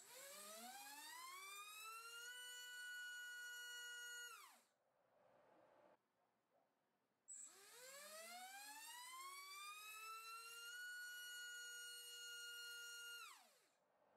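MAD Racer 2306-2750KV brushless motor on a thrust stand, spinning three-blade 5-inch props on 4S, run up to full throttle twice. Each time its whine rises in pitch over about two seconds, holds steady for about two more, then falls away as the throttle is cut. The second run starts about seven seconds in.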